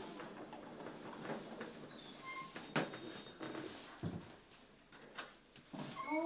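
Lift doors sliding, with a few sharp clicks and knocks over a low hiss.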